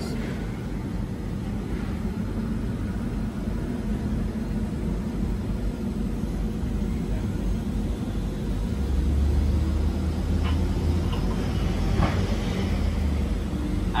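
Steady low rumble of a heavy vehicle idling, swelling louder about nine seconds in, with a couple of faint clicks near the end.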